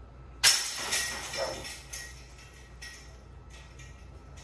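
Disc golf putter hitting the chains of a disc golf basket: a sharp metallic clash with a second strike right after, then the chains jingle and rattle as they settle.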